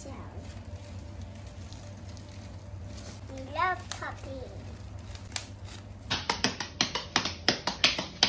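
Bubble wrap popping: a quick run of sharp pops, several a second, starting about six seconds in. Before that only a low steady hum with a few faint clicks.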